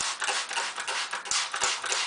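Hand-held spray bottle misting water onto hair in quick repeated squirts, each a short hiss, several a second.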